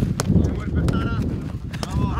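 A football being kicked during a quick passing drill: a sharp knock soon after the start and two more in quick succession near the end, with players' shouts between.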